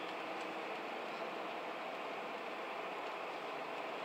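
Steady road and tyre noise of a car driving at an even speed, heard inside the cabin.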